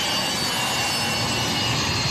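Jet airliner's engines running on the ground, a steady loud roar with several high whining tones held level.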